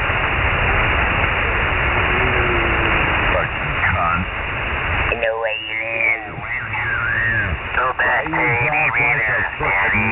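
Lower-sideband ham radio audio on the 40-metre band. For about the first five seconds a heavy hiss of noise carries a faint voice in it. From there on a warbling, distorted voice comes over the air.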